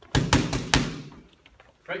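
Boxing gloves smacking into focus mitts: four quick punches in under a second, loud and sharp, then the echo dies away.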